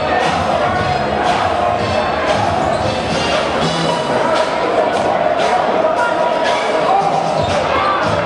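A basketball bouncing on a gym floor during live play, heard over constant crowd voices and music.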